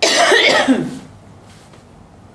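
A woman coughing once, a loud harsh cough lasting about a second.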